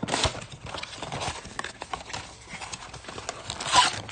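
Cardboard trading-card blaster box being opened and its wrapped packs slid out and handled: a quick run of light knocks and rustles, with a louder rustle near the end.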